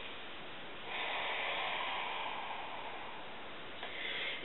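A faint, steady hiss of room noise, with one soft breathy exhale of about two seconds starting about a second in.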